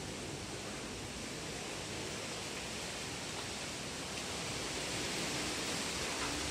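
Steady hiss of a storm, growing slightly louder near the end.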